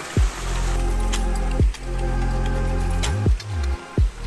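Background music: sustained chords over a deep, falling bass thump that comes about every second and a half.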